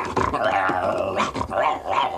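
A man imitating a dog fight with his voice, a continuous run of rough, broken vocal noises.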